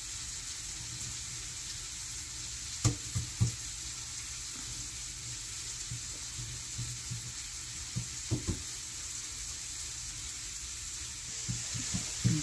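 Hands spreading softened margarine over a thin sheet of stretched dough on a work surface: a steady faint hiss with a few soft knocks.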